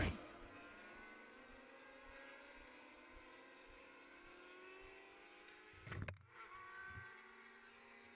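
Distant racing motorcycles running on the track, faint, their engine notes sliding slowly in pitch as they pass. A brief thump about six seconds in.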